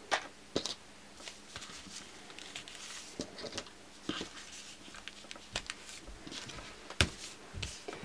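Scattered small clicks and soft paper rustling as paper clips are slid onto a stack of paper templates and fabric strips on a cutting mat, with one sharper click about seven seconds in.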